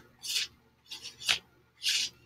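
Three short rasping scrapes, about half a second to a second apart: a paintbrush being worked against a bottle of white chalk paint to draw the paint out.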